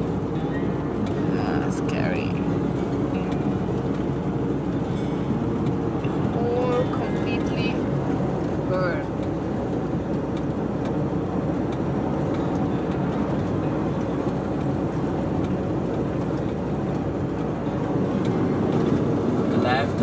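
Steady road and engine noise inside a pickup truck's cab while cruising on a paved highway, with a few brief faint pitched sounds over it.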